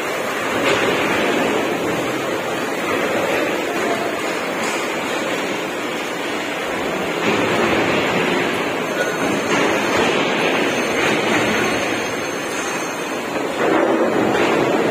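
Steady, loud rushing din of a large railway workshop hall, with no distinct machine rhythm or tone, swelling slightly now and then.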